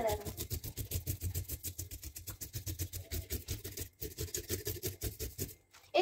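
Knife blade scraping the scales off a large rainbow trout in rapid, repeated strokes.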